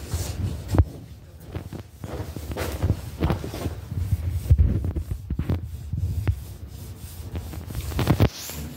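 Uneven low rumbling and thumping with rubbing sounds, the handling noise of a handheld phone's microphone being jostled, with scattered light clicks.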